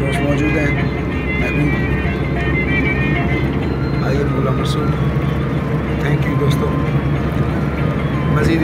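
Steady low rumble of a car's engine and road noise inside the moving car's cabin.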